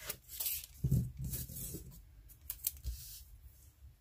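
A roll of washi tape being handled and its tape pulled off, with papery rustles, a soft knock about a second in and a few light clicks a little after two seconds.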